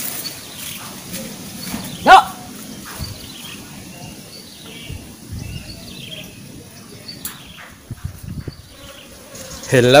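Quiet outdoor background with faint, scattered bird chirps, and one short, loud sound that rises sharply in pitch about two seconds in.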